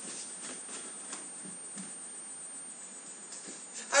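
Faint footsteps of a person running away through a house, short soft knocks about three a second, over a steady hiss and a thin high tone.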